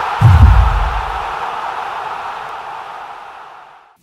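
Closing sting of a TV sports show's intro music as the logo appears: one deep bass boom about a quarter second in, followed by a noisy swell that fades away slowly over the next three and a half seconds.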